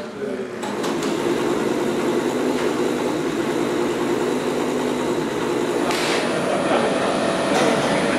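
An engine running at a steady idle, starting about half a second in, with voices in the background.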